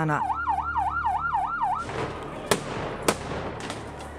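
Ambulance siren in a fast yelp, its pitch sweeping up and down about three to four times a second, which stops a little under two seconds in. A rush of noise follows, with two sharp bangs just over half a second apart, then fades.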